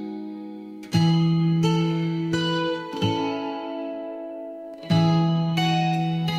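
AI-generated (Suno) song playing: strummed guitar chords, each struck and left to ring, with a pause of about two seconds before the last two. No vocals come in, because the generation glitched and left out the lyrics.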